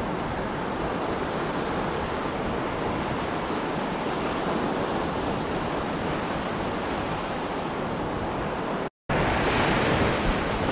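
Gulf surf breaking and washing up a beach, a steady rushing noise, with wind buffeting the microphone. The sound cuts out for a moment near the end and comes back louder and windier.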